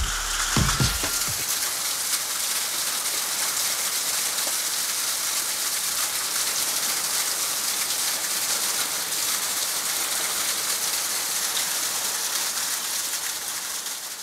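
Steady heavy rain, a dense even hiss, after the last few beats of a music track in the first second or so.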